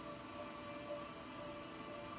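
Faint steady drone and hiss with quiet held tones: the hushed soundtrack of a horror movie trailer playing through desktop computer speakers.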